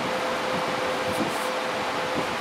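Steady fan-like machine hum: an even rushing noise with a constant mid-pitched whine.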